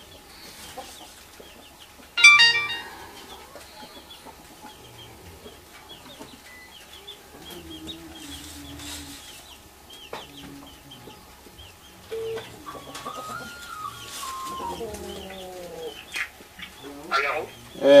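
Chickens clucking, with one loud squawking call about two seconds in and small high chirps throughout. A short electronic tune moving in stepped notes comes in the second half.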